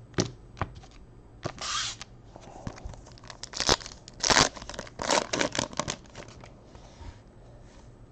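A trading-card pack wrapper torn open by hand: a string of short rips and crinkles, loudest between about one and a half and six seconds in.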